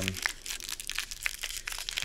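Small clear plastic pouch crinkling as fingers work it open, a dense run of tiny irregular crackles.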